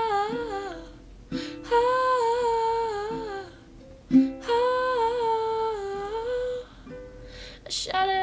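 A girl's voice singing long held notes that waver and glide downward at the end of each phrase, over a ukulele strummed before each phrase.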